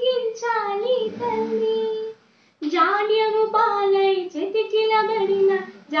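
A young girl singing a patriotic song solo, holding long, sliding notes, with a short pause for breath about two seconds in before the next line.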